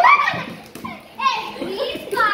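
Several children's excited voices, shouting and exclaiming over one another, with a loud rising cry right at the start and more voices joining a little over a second in.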